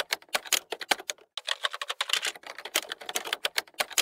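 Rapid typewriter-style keystroke clicks, a sound effect laid under an animated text title, with a short pause just over a second in.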